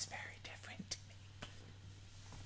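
Quiet, breathy laughter and whispered words between two people, with a few small clicks, over a low steady hum.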